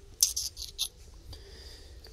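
Paper-wrapped firework barrage tubes scraping and rubbing against each other as they are handled, in a quick run of four short scratchy bursts in the first second.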